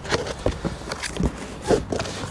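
Cardboard box and its packaging being rummaged through by hand: a run of scattered rustles, scrapes and small knocks.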